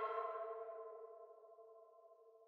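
Synth bell preset ('Drunken Bells' in Arturia Analog Lab V) sounding an A minor chord (A4, E5, C6, E6) that rings on and slowly fades away.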